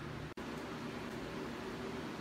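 Steady low background hiss with a faint hum, broken by a brief dropout about a third of a second in.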